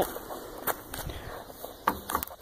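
Light handling noise and movement: a few short knocks and rustles over a faint background, with the sharpest knock near the end.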